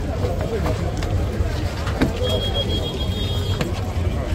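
Indistinct voices of a group of people talking over a constant low rumble. A high, thin, broken tone sounds from about halfway through for a second and a half.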